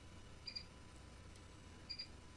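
Near silence in a pause of speech, broken twice by a faint, very short, high electronic beep, the two about a second and a half apart.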